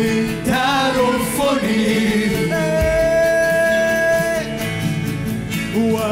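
Arabic Christian worship song: a male voice singing with a live band, with one long held note near the middle.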